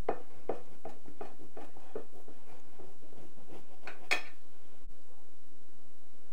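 A knife sawing through the crusty top of a panettone while a metal fork holds it: a quick run of short scratchy strokes, then slower ones, with one sharper click of metal a little after four seconds in.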